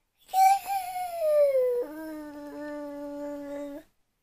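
A toddler's long drawn-out wail: a high cry that slides down in pitch, then drops suddenly to a lower note held steady for about two seconds before stopping.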